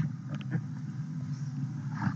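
A steady low hum with faint background noise and a few faint ticks about half a second in.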